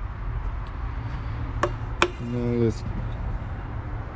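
Two sharp clicks, about half a second apart and the second louder, over a steady low background hum, followed by a short voiced 'mm'.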